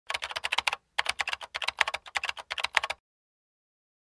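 Computer keyboard typing sound effect: rapid key clicks with a short pause just before the first second, stopping about three seconds in.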